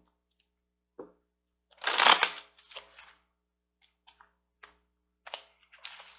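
A deck of tarot cards being handled and shuffled by hand: scattered soft clicks, then one louder rush of cards riffling together about two seconds in, and a few light taps after it.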